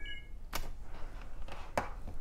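Two sharp clicks a little over a second apart, after a brief high-pitched chirp-like tone at the start.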